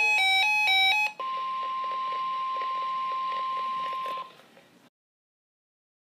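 Weather radio alert: about a second of electronic beeps alternating quickly between two pitches, then the steady NOAA Weather Radio warning alarm tone held for about three seconds before it fades out, followed by a second and a half of dead silence.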